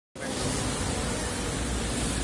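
Steady noise, an even hiss with a low rumble underneath, starting just after the opening and holding level.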